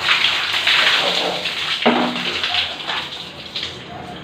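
Water poured from a plastic dipper over a person's head and body, splashing down onto a concrete floor. The splashing starts suddenly, is loudest for the first two seconds, then thins out toward the end.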